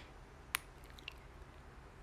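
Quiet room tone with one sharp click about half a second in and a fainter click about a second in.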